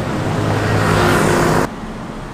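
A motor vehicle passing close by on the street: a low engine hum with tyre and road noise that swells, then cuts off suddenly about a second and a half in.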